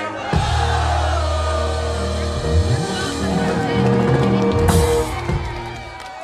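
Live reggae band: bass holding long low notes, then a moving bass line under a sustained keyboard chord, with a cymbal crash about five seconds in before the music drops away.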